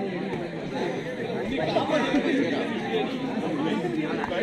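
Many voices of spectators and players talking over one another at once, a steady babble of chatter with no single voice standing out.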